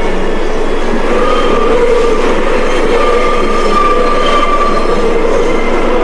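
Subway train running in the station, a steady loud rumble with long drawn-out high squealing tones.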